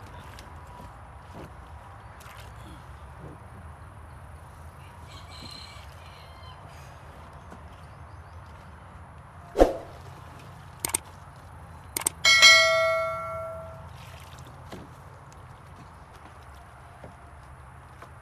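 A subscribe-button sound effect: a sharp pop, two quick clicks, then a bright bell ding that rings out over about a second and a half. Under it runs faint steady outdoor background noise.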